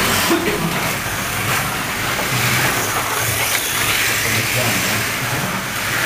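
Pre-1970 slot cars racing around a multi-lane track, their small electric motors giving a steady whir, with people talking in the background.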